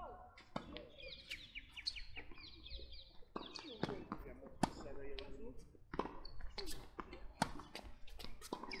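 Tennis ball being struck by rackets and bouncing on a hard court during a doubles rally: a run of sharp pops about once a second, the loudest a little before five seconds in and again near the end.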